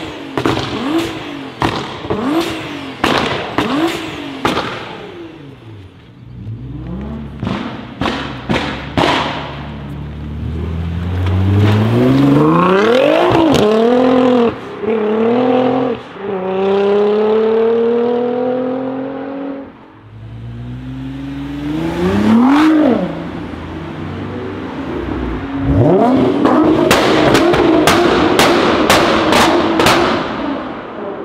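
Nissan GT-R's twin-turbo V6 on an Armytrix exhaust: quick rev blips with sharp exhaust pops and bangs for the first few seconds. Then it accelerates hard with rising engine pitch and short breaks at the gear changes. Near the end it is loud again with a burst of crackling pops.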